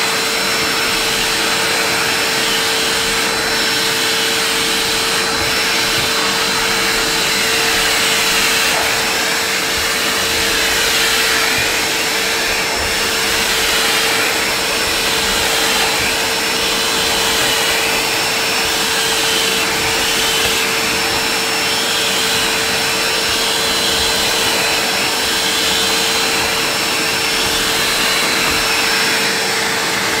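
Numatic Henry cylinder vacuum cleaner running steadily on carpet, its motor holding one steady hum under a rush of air. The air note swings up and down in pitch now and then as the floor nozzle is pushed back and forth.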